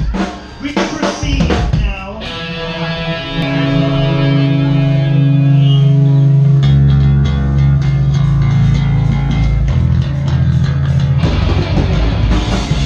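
Live punk rock band with a Fender electric bass. A few drum hits open it, then a long held, ringing chord sustains for several seconds. About halfway through, the bass and drums come in together at full volume.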